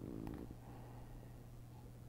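Quiet room tone with a steady low hum, and a brief soft low sound with a faint click in the first half second.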